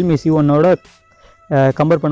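A man talking, with a short pause near the middle in which faint background music is left.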